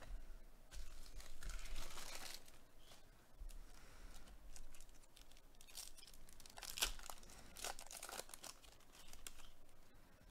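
A foil trading-card pack wrapper being torn open and crinkled by gloved hands: a longer rustling tear about a second in, then a few sharp crackles near the seven-second mark.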